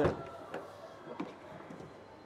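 Tailgate latch of a Leapmotor T03 electric car releasing with a sharp click, followed by a few faint knocks as the hatch is lifted open.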